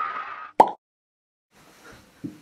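Logo sting sound effect: a swelling tone that ends in a single sharp pop about half a second in.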